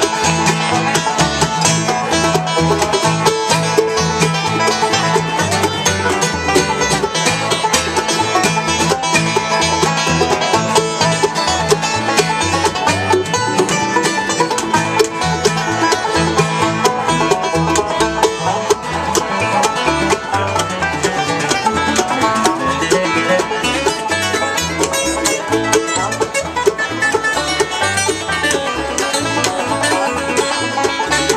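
Live bluegrass band playing acoustic string music: five-string banjo picking over a steady upright bass pulse, with mandolin in the mix.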